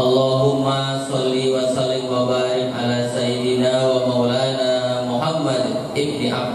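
A preacher chanting an Arabic opening recitation into a handheld microphone, in long, drawn-out melodic phrases held on steady notes.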